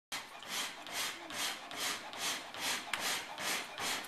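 A sheet of cardboard fanned rapidly at a wood fire, each stroke a whoosh of air, about two and a half strokes a second, driving air into the fire. A single brief click about three seconds in.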